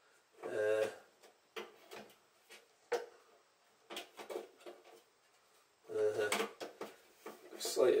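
Plastic turntable dust lid on a Matsui hi-fi being handled and tried in place: a scatter of light clicks and knocks. The lid won't sit right, which the owner puts down to plastic fittings that need fixing.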